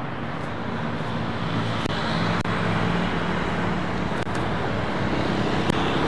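Steady city road traffic: vehicles passing on the street, with an engine's low hum swelling a little in the middle.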